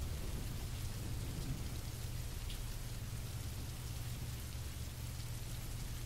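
Steady background bed: an even, rain-like hiss over a low, unchanging hum.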